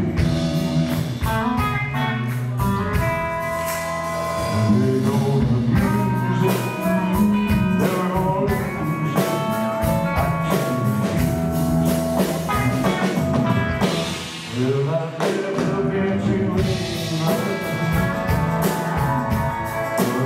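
Live blues-rock band playing: electric guitar, electric bass and drums with a male voice singing.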